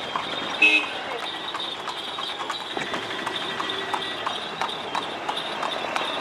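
A horse drawing a tanga cart, its hooves clip-clopping as a run of short, irregular clicks over street noise.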